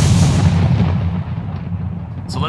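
A single sudden loud boom that dies away over about a second and a half, with a steady low hum underneath.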